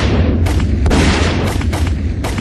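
Battle sound effects: a heavy, continuous rumble of explosions with about five sharp gunshot reports spread across two seconds.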